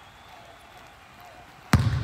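A basketball bouncing once on a gym's hardwood floor near the end, a single sharp thump with a short echo from the large hall, after quiet room tone.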